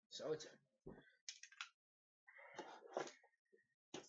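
A short spoken 'okay' and a quiet mumble, with a soft knock and a few light clicks from handling paintball marker parts.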